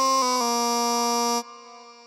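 A pitch-corrected sung vocal note from a hip hop hook held on flat, vibrato-free pitches that step up and down slightly, as edited with Logic Pro's Flex Pitch. It cuts off about one and a half seconds in, leaving a faint fading tail.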